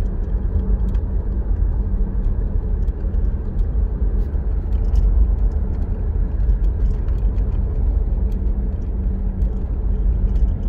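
Steady low rumble of a car driving along the road, its engine and tyre noise heard from inside the cabin.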